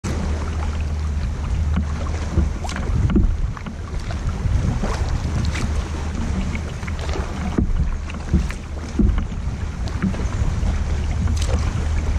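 Double-bladed kayak paddle dipping into the water in alternating strokes, with short splashes and drips every second or so, over a steady low rumble of wind on the microphone.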